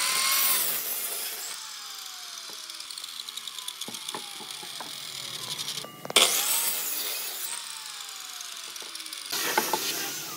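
Electric miter saw starting with a rising whine and cutting through a wooden block, then the blade spinning down with a long falling whine. This happens twice, about six seconds apart, and the saw starts again near the end.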